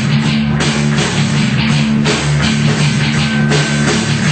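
Heavy metal band playing live: an electric guitar riff over a drum kit, with no vocals.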